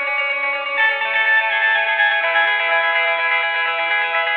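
Rock song: electric guitar played through effects, ringing out several sustained notes at once, with no clear drum hits.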